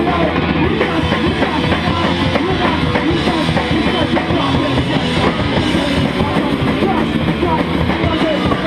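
A live band playing loud, dense rock music, with the drum kit and cymbals prominent, heard from among the audience in a small club.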